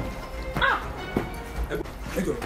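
Background music with steady held tones, and a dog barking once about half a second in.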